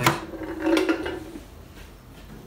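Stainless steel Dualit Lite kettle being handled and lifted off its base: a sharp click at the start, then a short metallic clatter with a ringing note that fades within about a second and a half.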